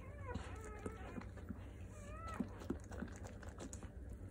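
Two short, high-pitched whimpering cries from a dog: one at the very start that curves down, and one about two seconds in that rises and falls. Soft clicks and rustles sound in between.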